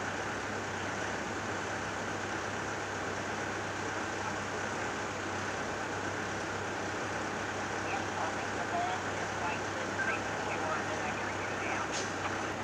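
Steady background din of an outdoor construction site in a city: a constant low hum and an even rumble like distant traffic and machinery, with a few faint, brief sounds in the last few seconds.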